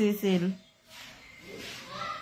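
A person's voice, drawn out and pitched, breaking off about half a second in, followed by faint low sound.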